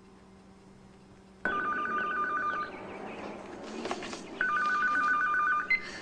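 Telephone ringing twice, each ring an electronic warble about a second long, the first starting after a second and a half of quiet.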